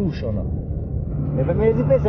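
Steady low rumble of engine and road noise inside a moving car's cabin, with a low hum, beneath men's voices.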